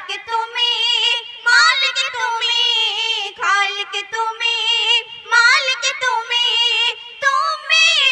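Two young girls singing a Bengali Islamic gojol duet through microphones and a PA, in long held notes with wavering ornaments and no audible instrumental beat.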